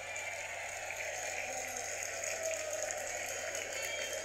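Soundtrack of a recorded speech video played back from a laptop, before the speaker starts: a steady hiss of event-hall ambience with scattered faint clicks.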